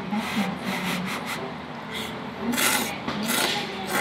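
A person slurping tonkotsu ramen noodles: repeated noisy, hissing slurps, the loudest two coming between about two and a half and three and a half seconds in.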